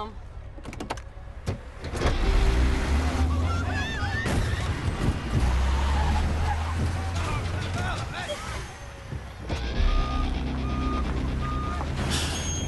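Heavy truck engine running loud under acceleration, with knocks and crunching metal as the truck rams through parked cars. Three short beeps sound near the end.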